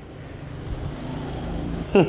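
A low rumbling noise that swells steadily in loudness, with a short rising vocal sound right at the end.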